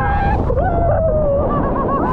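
Raft-slide riders screaming and whooping in long rising-and-falling shrieks, over a steady loud rush of water and wind noise as the raft tube slides down the waterslide.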